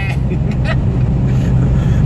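Scania R440 truck's diesel engine running steadily at highway cruise, a low drone heard inside the cab along with road noise.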